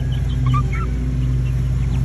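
A steady low mechanical hum, like a motor running, with a few faint short peeps from 6-7 week old chicks in the first half.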